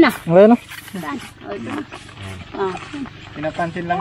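A loud vocal outburst from a person at the very start, its pitch sliding steeply, followed by softer voices talking.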